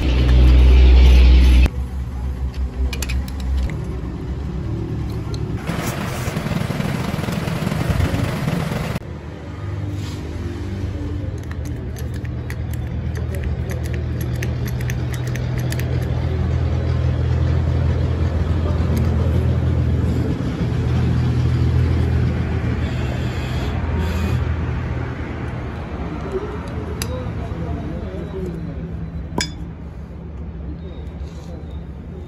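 Light metal clinks from handling the bottle jack's steel parts, over a steady low hum.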